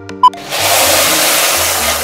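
Running-water sound effect for a miniature faucet being turned on: a steady rush of water starting about half a second in and lasting about a second and a half, over light background music, with a short ping just before it.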